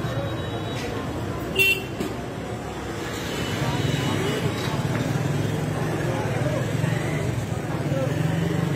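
Busy market street ambience: motorcycles and other traffic running, with people's voices in the background. A vehicle horn sounds briefly, high-pitched, about a second and a half in.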